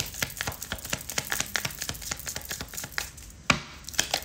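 A deck of tarot cards being shuffled by hand: a fast, uneven run of light taps and flicks, with one louder snap and a short swish near the end.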